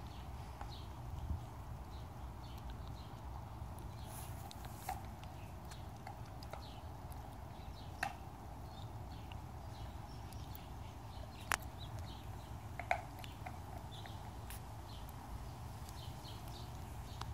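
Quiet outdoor ambience with a steady low rumble, broken by about five sharp clicks or taps and faint short high chirps.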